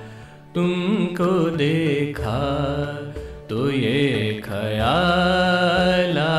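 Ghazal music: an ornamented melodic line bending up and down over a low, steady backing. It drops quiet briefly at the start and again about three seconds in.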